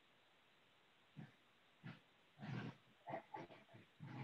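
Near silence, then a few faint, short murmurs of a person's voice from about a second in.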